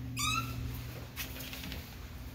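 A single short high-pitched squeal, about a quarter of a second long, just after the start, over a steady low hum. A few faint clicks follow about a second in.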